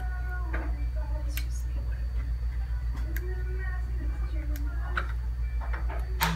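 Orthodontic debonding pliers popping metal braces brackets off the teeth: a few sharp, separate clicks over a steady low hum.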